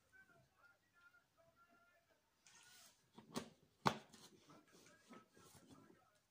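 Mostly quiet room with faint, far-off voices, a short muttered remark, and two sharp clicks about half a second apart near the middle.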